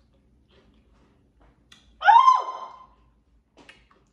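A short, high-pitched squeal about two seconds in: the pitch shoots up, holds briefly, then falls away. The rest is quiet.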